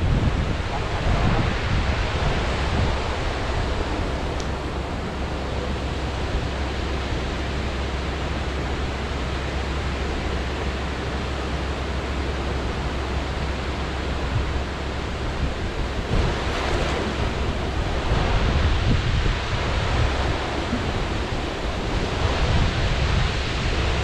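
Steady rush of river water spilling over a low weir, with wind rumbling on the microphone.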